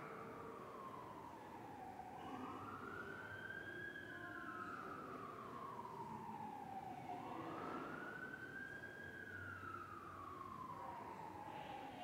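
A siren wailing in slow sweeps, each rising for about two seconds and falling for about three, heard faintly.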